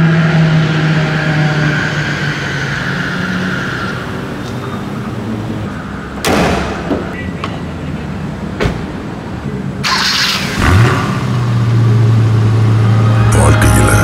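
A car bonnet is slammed shut about six seconds in and a door thuds shut shortly after. Near the end the car's engine cranks, catches and settles into a steady idle, all over steady background music.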